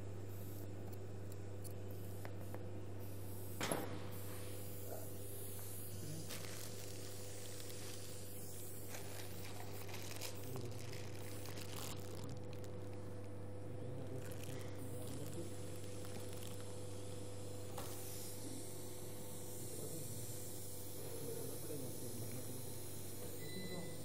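A steady low hum with an even background hiss. There is one sharp click a little under four seconds in.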